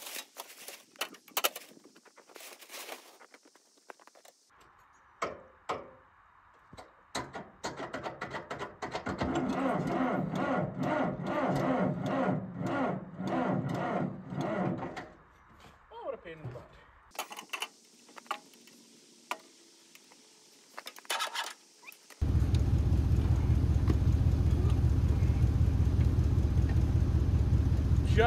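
Old John Deere crawler dozer's engine being cranked over on its starter with a rhythmic pulsing for about twelve seconds, without settling into a steady run. From about 22 s a loud, steady engine drone takes over.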